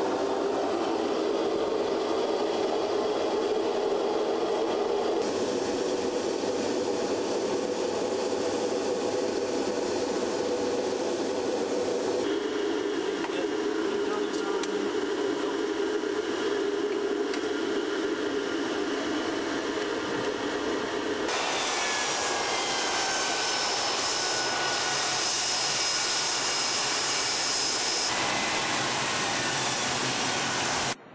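Jet engines of NASA's Shuttle Training Aircraft, a modified Gulfstream II, running: a steady turbine roar with a thin high whine. The sound changes abruptly a few times, and in the last third a tone glides slowly down in pitch.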